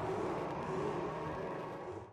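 A steady low background drone with a faint wavering tone, fading away near the end.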